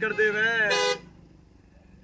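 Car horn honking with a steady tone that ends just before the first second, over a voice; the second half is quiet.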